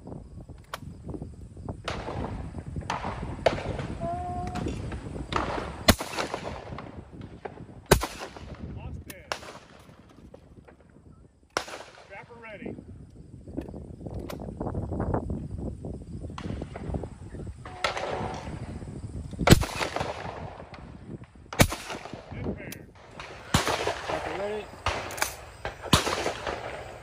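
Shotgun shots at clay targets: two pairs of sharp reports, each pair about two seconds apart, with more shots near the end. Low voices murmur in between.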